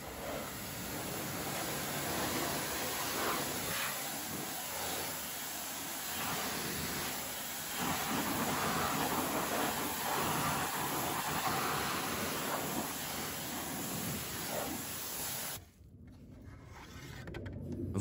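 Pressure-washer jet spraying water against a car's alloy wheel and tyre, rinsing off the cleaning foam. The spray hiss rises and falls as the jet moves, then cuts off suddenly near the end.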